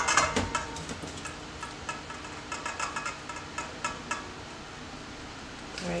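Gloved fingers scooping and working moist sea-salt bath bomb mixture into a flower-shaped mould, making soft crunching, crackling clicks that thin out over the last couple of seconds.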